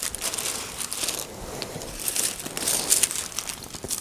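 Thin tissue-paper sewing pattern pieces rustling and crinkling irregularly as hands lift, slide and lay them over one another.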